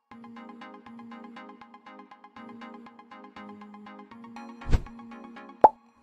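Quiz countdown-timer music: a quiet electronic loop of quick repeating ticking notes over a steady low tone, marking the answer time running out. A low falling boom comes near the end, then a sharp pop just before the next question.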